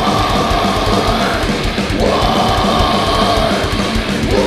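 A heavy metal band playing live: distorted electric guitars and fast drumming under a singer shouting two long held vocal lines.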